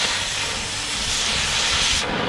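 Oxy-acetylene cutting torch cutting through metal plate: a steady, loud hiss of the cutting-oxygen jet as the torch burns through the steel, dropping away sharply near the end as the cutting lever is let go.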